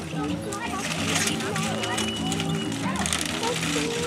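Background music with held notes and a steady rhythm, mixed with people's voices.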